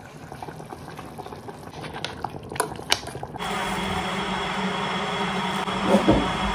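Pots of stew and rice cooking on a hob with a watery, liquid sound and a few sharp metal clinks about two to three seconds in. Just past halfway the sound changes abruptly to a louder, steady hum with a faint high whine.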